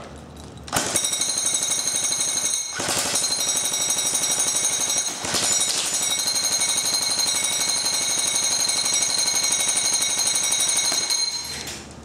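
APS UAR airsoft electric gun (Version 3 gearbox) firing full-auto on a 7.4 V LiPo battery: a rapid, even rattle of the gearbox cycling, with a high motor whine. It fires in long strings with two brief breaks, starting just under a second in and stopping shortly before the end.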